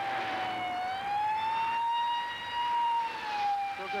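Japanese police patrol car's siren wailing: one long tone that rises slowly in the first second and a half, holds, then falls back a little after about three seconds.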